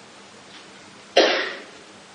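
A woman's single short cough about a second in, sudden and then quickly fading, between pauses in quiet speech.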